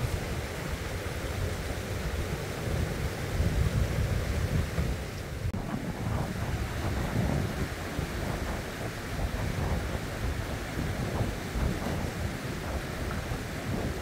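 Shallow river rushing over rocks, with wind buffeting the microphone in irregular low rumbles.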